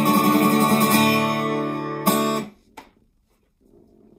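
Cutaway acoustic guitar playing the closing chord of a song: a strummed chord rings on, is struck once more about two seconds in, and is then damped to silence half a second later. A faint tap follows.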